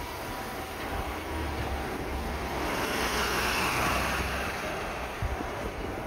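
A vehicle driving past on a city street: its tyre and engine noise swells to a peak three to four seconds in, then fades, over a low rumble throughout.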